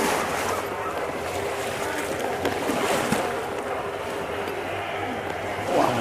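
Water sloshing and splashing around an elephant wading into a shallow stream, heard as a steady rushing noise with a few short knocks.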